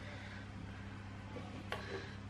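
Quiet room tone with a steady low hum, and one faint tap near the end as a silicone spatula scrapes soft bread dough out of a mixing bowl.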